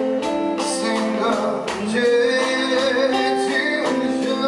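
Live music: a man singing without clear words over guitar accompaniment, with steady rhythmic clicks.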